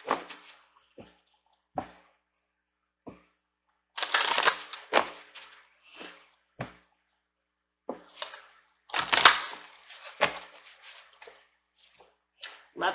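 Oracle cards being shuffled and handled: two longer bursts of shuffling, about four seconds in and about nine seconds in, with single clicks and taps of cards in between.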